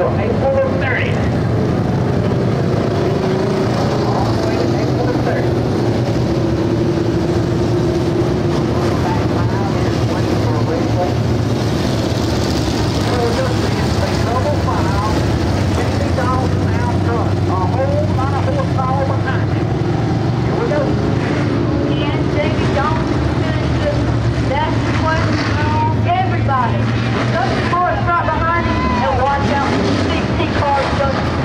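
A pack of dirt-track stock cars circling the oval, their engines running together in a loud, steady drone.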